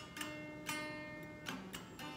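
Electric guitar picked in a clean, thin tone, with a few single notes struck in turn and left to ring, roughly half a second apart.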